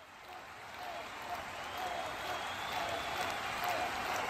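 Crowd applause with scattered voices, fading in from silence and growing louder.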